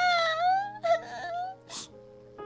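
A radio-drama actor's high-pitched voice wailing in anguish: two long drawn-out cries, the first rising and falling in pitch, then a sharp breath near the end.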